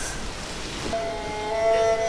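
Bowed-string stage music begins about a second in, with long held notes over the low noise of the theatre.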